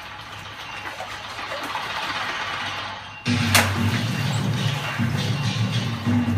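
Water splashing and sloshing as water puppets are moved through the pool, then water-puppet show music comes in loudly about three seconds in, opening with a sharp crack and carrying on with a pulsing low beat.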